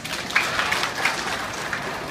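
Audience applauding, the clapping starting about a third of a second in and slowly easing off.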